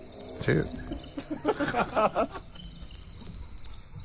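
Cricket chirping sound effect, a steady high trill: the comic stock sound for silence, standing for an empty mind with nothing in it.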